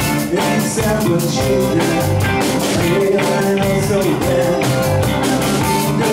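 Live rock band playing: electric guitar and drum kit, with a held, bending lead melody over the top.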